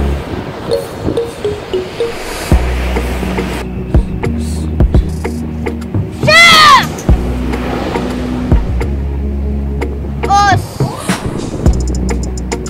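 Background music, over which a child gives a loud karate kiai shout, rising then falling in pitch, about six seconds in, and a second, shorter shout at about ten and a half seconds.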